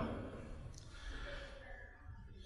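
Faint breathing of a man pausing between phrases at a microphone, over a low steady hum.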